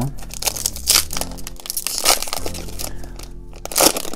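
Foil trading-card booster pack wrapper crinkling and tearing as it is pulled open by hand, in a series of short bursts with louder rips about two seconds in and near the end, with faint background music.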